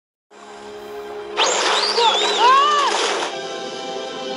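Film soundtrack: steady sustained background music. From about a second and a half in, a loud rush of water as a swimmer plunges into a pool, with gliding, wavering calls over it, cutting off sharply just before the end.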